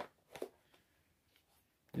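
One short click about half a second in as the dummy magazine of an Umarex Colt M4 break-barrel air rifle is handled at its magazine well; otherwise quiet room tone.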